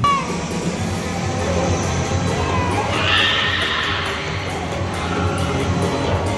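Spinning amusement park ride running, with park music playing over its mechanical noise. A brief hissy burst comes about three seconds in.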